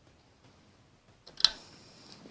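A quiet workshop, then a single sharp metallic click about one and a half seconds in, with a brief high ring: a hand tool knocking against the metal of a Ford flathead V8 engine's front end as the crankshaft spanner and timing pointer are handled.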